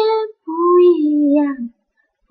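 A female voice singing unaccompanied: a held note ends just after the start, then a short phrase falls in pitch and stops shortly before the end.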